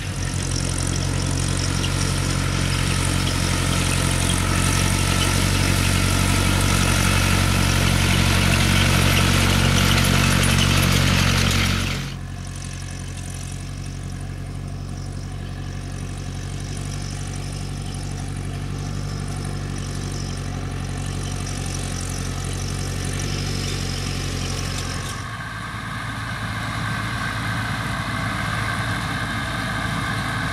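Farm tractor engines running steadily while pulling hay machinery. The sound changes abruptly about 12 and 25 seconds in: first a tractor with a rotary hay rake up close, then a red Case IH tractor pulling a rotary rake, then a John Deere tractor pulling a round baler.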